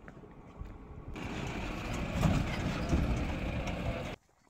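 A goods truck passing close by: its engine and road noise swell over the first second and then stay loud and steady.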